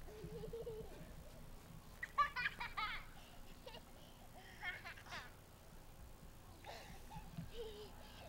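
A young child laughing in short, high-pitched bursts, loudest about two seconds in, with more giggling around five seconds and again near the end.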